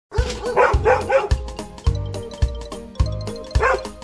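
Upbeat background music with a steady drum beat, with a dog's high-pitched barks over it: three quick barks about half a second in and one more near the end.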